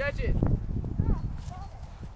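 Brief voices calling out across an open field: a short call at the start and another about a second in, over a steady low rumble of wind on the microphone.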